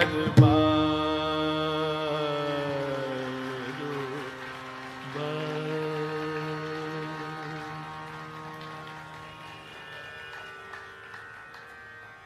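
Hindustani classical music: a last tabla stroke just after the start, then long held notes over a drone. The first note sinks slightly in pitch and fades, a second held note enters about five seconds in, and the sound slowly dies away.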